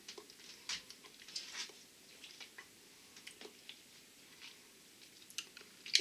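Faint, scattered lip smacks and tongue clicks of a person tasting food in his mouth.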